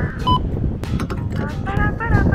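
A short electronic beep from a petrol pump about a third of a second in, over rumbling wind on the microphone, followed by a voice.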